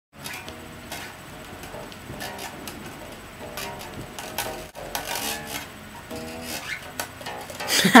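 Quiet music with short pitched notes and a few clicks and rustles, then a person laughs loudly at the very end.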